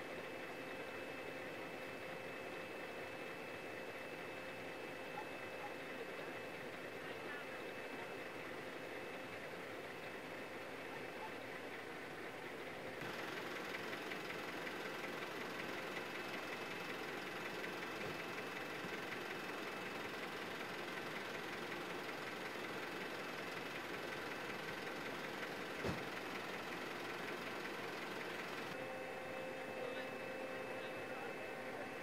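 Emergency vehicles idling at a crash scene: a steady engine rumble with a constant hum. The sound gets louder about halfway through, and there is a single sharp click near the end.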